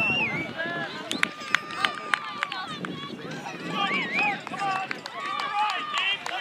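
Several distant voices calling and shouting across an outdoor soccer field, overlapping, with a few sharp clicks a little after a second in.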